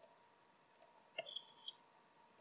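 Several faint computer mouse clicks: one at the start, then a few more about a second in, over a quiet background.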